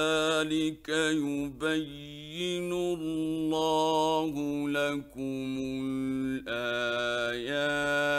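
Male Quran reciter in the melodic mujawwad style, a single voice chanting in long held, ornamented phrases with a few brief breaks between them.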